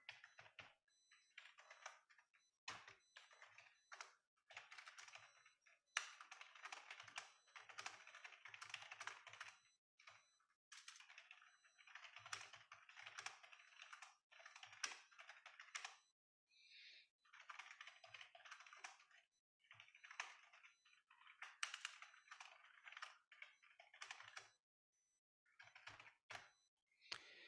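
Computer keyboard typing, faint, in quick runs of keystrokes broken by short pauses.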